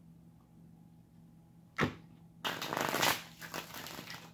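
Tarot deck being shuffled by hand: a sharp snap of cards a little under two seconds in, then a brief burst of rapid card riffling, with smaller crackles after it.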